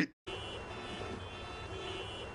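A steady faint rumbling background ambience with a faint hum, coming in after a brief moment of silence at the start.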